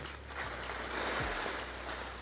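Skis sliding and turning on snow: a steady hiss, with a low wind rumble underneath.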